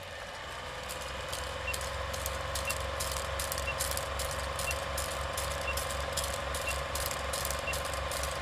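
Steady mechanical whirring with a fast rattle of clicks, and a faint short beep about once a second.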